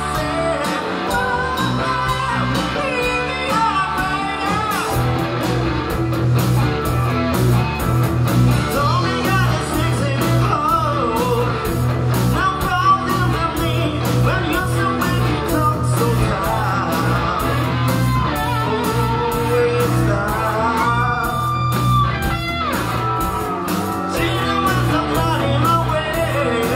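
A live rock band playing a song: electric guitars and drums with a steady beat under a lead singer's voice, heard from among the audience.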